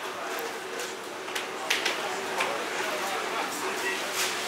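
Background hubbub of a busy indoor concourse: faint distant voices with a few short clicks and clatters.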